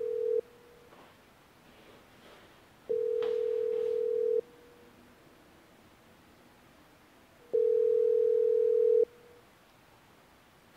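Telephone ringback tone from the phone's earpiece while a call rings out unanswered: a steady tone in rings of about a second and a half, repeating about every four and a half seconds. One ring ends just after the start, and two more follow.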